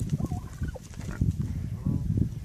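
Turkey tom, tail fanned in display, gobbling in a few short bursts over a steady low rumble.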